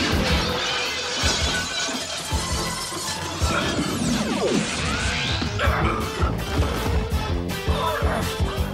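Cartoon sound effects of glass shattering and an energy blaster firing, with a steeply falling zap about four seconds in, over action music with a steady beat.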